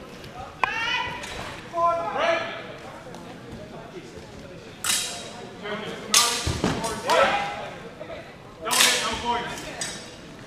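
Swords striking in a fencing exchange: a few sharp clashes around the middle and near the end, among shouting voices early on. The exchange ends in a double hit.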